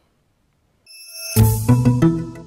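Short musical logo sting: after near silence, a faint rising swell about a second in, then a few bright sustained notes that step through two or three pitches and ring out.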